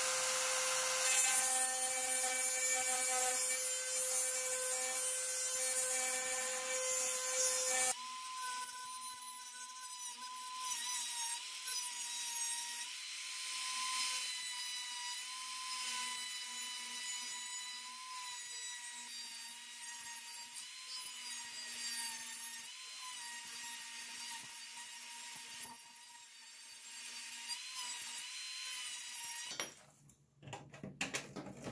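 Handheld rotary tool running against the rusty sheet metal of an old toy piano, its steady motor whine mixed with scraping as the bit works the metal. About eight seconds in, the sound changes suddenly to a quieter, higher-pitched whine that dips briefly now and then as the bit bites.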